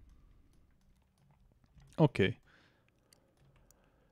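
A few faint, scattered clicks from computer input while working in CAD software, with a single spoken "Ok" about two seconds in.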